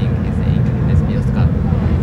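Steady low rumble of racing car engines running at the circuit, with faint voices over it.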